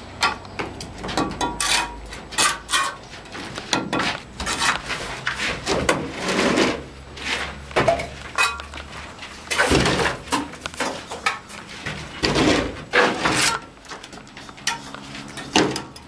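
Steel mason's trowel tapping and scraping on clay bricks and lime-cement mortar: an irregular run of sharp clinks, knocks and short scrapes.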